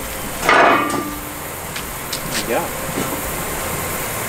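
A loose steel forklift tine clanks once against the concrete and the steel fork frame about half a second in, with a short ring after it.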